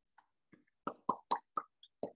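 A person's voice: four short, quiet sounds in quick succession about a second in.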